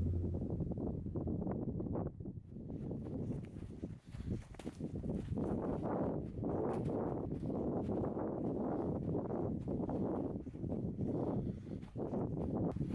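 Footsteps of a hiker walking on snow, a steady run of soft crunching steps about one to two a second.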